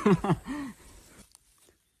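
A man laughing, a few short 'ha' syllables that stop under a second in, followed by near quiet with a few faint ticks.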